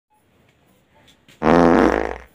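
A loud fart on one steady low pitch, starting about one and a half seconds in and lasting nearly a second.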